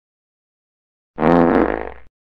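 A short fart sound effect about a second in, pitched with a low rumble beneath, fading out over just under a second.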